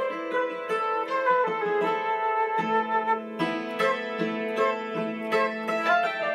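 Hammered dulcimer and transverse flute playing a Finnish polska together. The dulcimer's quickly struck, ringing notes sound under the flute's held melody notes.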